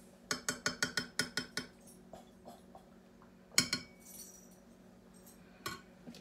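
A kitchen utensil scraping and knocking against a mixing bowl while batter is scraped out: a quick run of about eight clinks in the first second and a half, then two louder single knocks later on. A steady low hum runs underneath.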